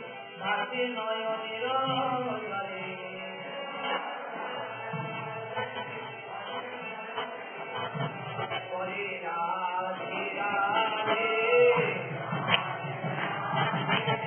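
Devotional chanting and singing in kirtan style, with melodic voices carrying on without a break.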